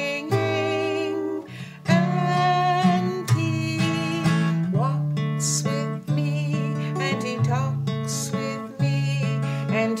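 Acoustic guitar strummed in a slow, steady hymn accompaniment, chords changing every second or so.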